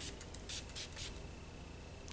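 Bath & Body Works Georgia Peach Sweet Tea body spray misted from a pump bottle onto skin: four or five short spritzes in quick succession.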